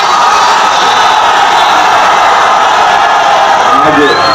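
Crowd cheering and shouting in a loud, steady din.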